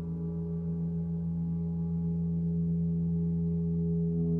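A 36-inch cosmo gong sounding a sustained, wavering hum: a strong low tone with a stack of steady overtones above it, slowly growing louder.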